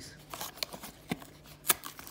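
Cardboard cookie box being opened by hand: light scraping and rustling of paperboard with scattered clicks, and one sharper snap about 1.7 seconds in.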